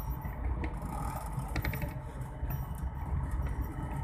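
Rattling and a steady low rumble of a ride in a moving vehicle on a rough road, with a few sharp clicks.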